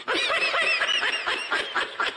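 A woman laughing hard in a quick, high-pitched string of laughs that starts abruptly and eases off slightly toward the end.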